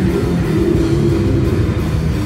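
Metal band playing live, with distorted guitars and a drum kit: loud, dense and unbroken.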